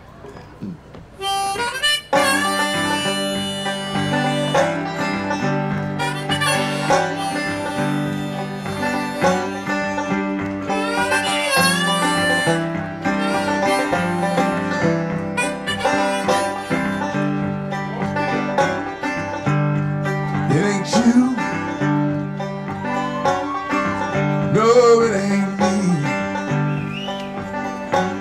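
Live blues intro starting about a second and a half in: a banjo picked with a harmonica played over it, backed by a guitar.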